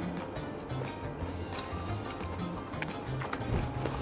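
Background music with a bass line moving through low notes, and a few faint clicks of forks on slate serving boards.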